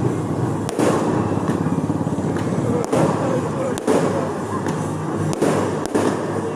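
Firecrackers going off in sharp bangs, four loud ones and smaller cracks between them, over a steady din of festival crowd noise.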